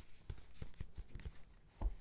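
Fingertips tapping on a padded, fabric-covered cover with a stitched edge: several soft, dull taps, with one firmer tap near the end.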